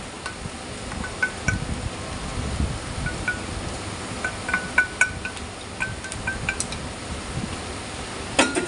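A metal spoon clinking against a wok as stir-fried noodles are tossed, with a dozen or so short, ringing clinks all at the same pitch over the low rustle of the noodles being stirred.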